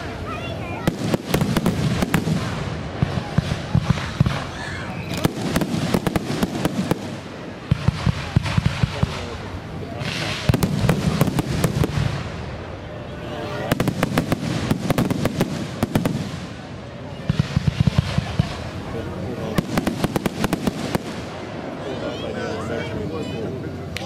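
Fireworks display: about six volleys of rapid, sharp crackling reports, one every few seconds, over a continuous low rumble.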